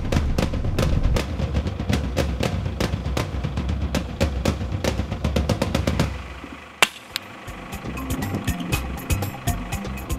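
Background music with fast, driving drums that drops to a quieter bed about six seconds in. Just after the drop comes a single sharp crack: a tranquilliser dart gun firing at the sable cow.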